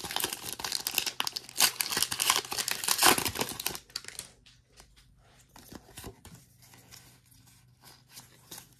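Foil wrapper of a Pokémon TCG Paradox Rift booster pack being crinkled and torn open, loudest around three seconds in. After that come faint rustles and light clicks as the cards are slid out and handled.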